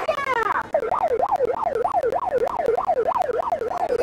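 Police car siren in a fast yelp, its pitch sweeping up and down about three times a second, starting under a second in.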